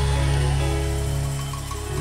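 Live worship band playing an instrumental passage: a steady deep bass under held chords, with acoustic guitar and drums in the band.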